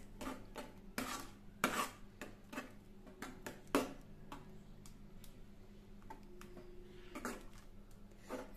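A metal ladle stirring thick barnyard-millet kheer in a kadai, with irregular soft clinks and scrapes of the ladle against the pan; the loudest knocks come a little under two seconds in and just before four seconds in.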